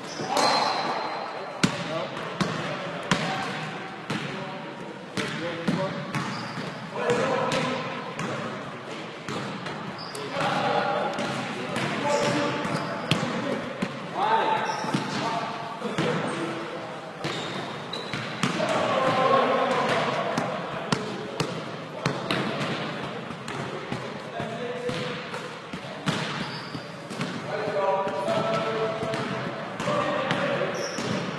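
A basketball bouncing on a wooden gym floor during play, with many short sharp hits scattered through, under indistinct voices of players calling out.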